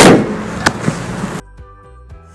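The bonnet of a Toyota Yaris slammed shut: one sharp bang with a brief ringing tail, followed by a lighter click. About halfway through, the sound drops suddenly to faint music.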